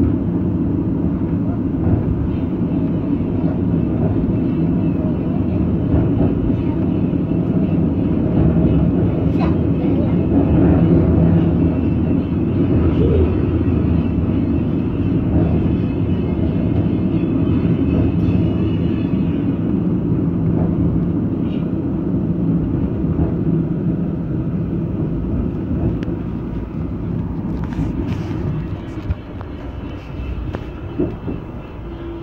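Metre-gauge electric train running along street track, heard from inside the driver's cab: a steady low rumble of wheels on rail with motor hum. It grows quieter over the last few seconds.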